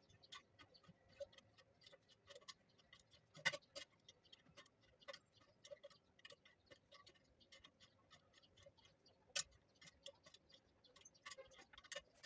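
Thin steel rebar being bent by hand on a steel pin bending jig, giving many small irregular metallic clicks and taps as the bar shifts against the pins, with two sharper clicks about a third of the way in and again near three-quarters of the way.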